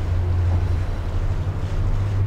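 Steady low rumble of outdoor background noise, with wind on the microphone.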